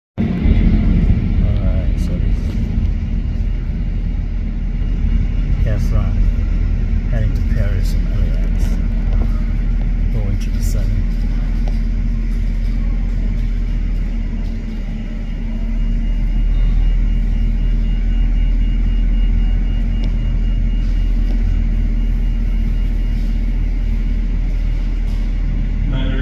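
Boeing 777's twin turbofan engines heard from the ground as the jet climbs away after takeoff: a steady low rumble that dips briefly about fifteen seconds in.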